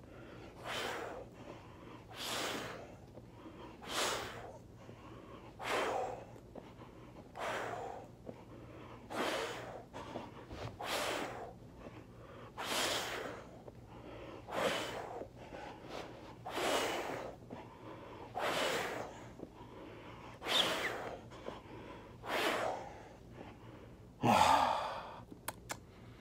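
A man breathing hard while doing push-ups: a forceful breath about every two seconds, with a louder exhale near the end.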